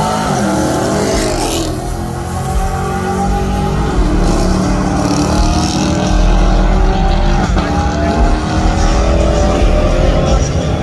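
Cars launching down a drag strip at full throttle. Engine pitch climbs steadily and drops back at each upshift, about 1.5, 4 and 7.5 seconds in.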